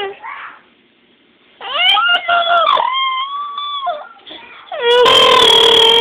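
Infant crying: quiet at first, then a few short wavering wails and a held one, and near the end one long loud wail.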